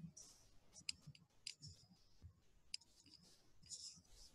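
Near silence broken by faint, scattered clicks and brief soft rustles, a few of them sharper.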